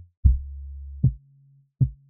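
Deep synthesizer bass notes played one at a time from a MIDI keyboard: three single notes of different pitch, each starting with a short click and then holding low, with brief silences between. The bass line is being tried out by ear.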